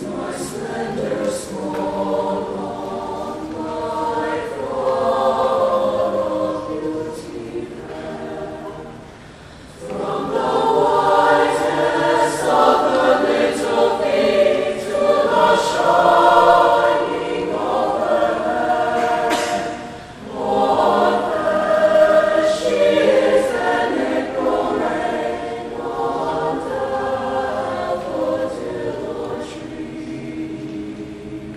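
A mixed choir singing in parts, with sustained sung chords that swell and fade. There are two short breaths between phrases, about ten seconds in and again about twenty seconds in.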